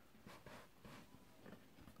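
Near silence, with a few very faint, soft rustles of cardboard trading cards being shuffled and handled.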